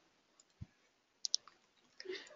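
Two quick, faint computer mouse clicks a little over a second in, with a soft low thump about half a second before them.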